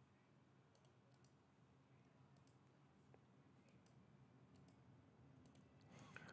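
Near silence: faint room tone with a scattering of faint computer-mouse clicks.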